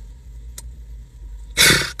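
Low steady rumble inside a car during a pause in talk, with a faint click about half a second in. Near the end comes a short, sharp breath drawn in just before speaking again.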